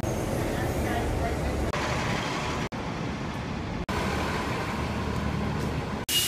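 METRO Blue Line light rail train running through a station: a steady low rumble with a faint thin whine in places. The sound is made of short clips joined by abrupt cuts, about a third of the way in and again a second later.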